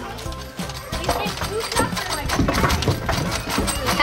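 Plastic keypad buttons of a swingset toy phone clicking as they are pressed, many clicks in quick succession, over children's voices and background music.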